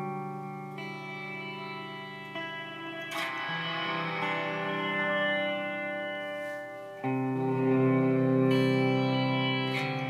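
Electric guitar chords played through an Eventide Space pedal's Blackhole reverb, with the decay set to the inverse-gravity side, ringing out into long sustained washes. New chords come in about one, two and a half and three seconds in, and a louder one comes about seven seconds in.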